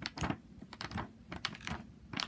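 Fingers poking and pressing into sticky green glitter slime, making a quick run of wet clicks and pops, about six in two seconds.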